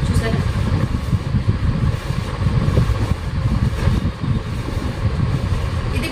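A loud low rumble whose level rises and falls unevenly throughout.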